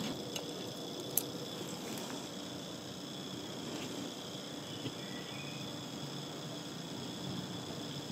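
Small electric draught fan on the chimney of a coal-fired live-steam garden-railway locomotive, running with a steady whir to draw up the freshly lit coal fire. A single sharp click comes about a second in.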